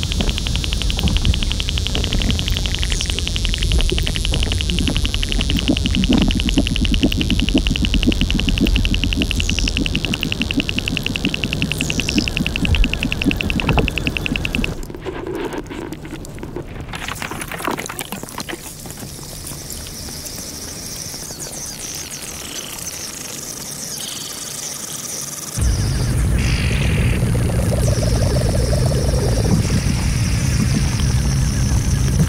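Hydrophone recording of melting glacier ice and meltwater. A dense low rumble with crackling gives way suddenly, about halfway in, to a quieter stretch of scattered clicks and pops. A steady low rumble comes back abruptly near the end.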